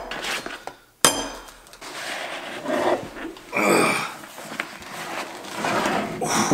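A Priority Mail shipping envelope being torn open and crumpled by hand, with a sharp rip about a second in and rustling, crackling bursts as the packaging is pulled apart.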